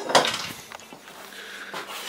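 Handling noise as a short length of square metal tubing is picked up: a sharp clatter right at the start, a smaller click under a second later, then faint rubbing.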